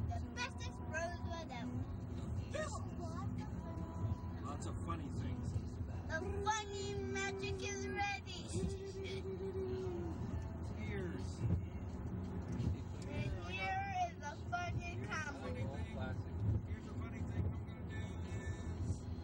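Steady low rumble of a moving car heard from inside its cabin, with voices and some music over it.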